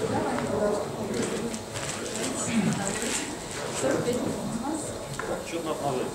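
Indistinct chatter of many people talking at once, with a few light clicks.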